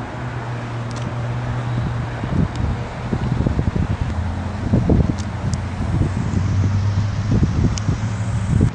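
Wind buffeting the microphone in irregular low gusts, strongest in the second half, over a steady low mechanical hum.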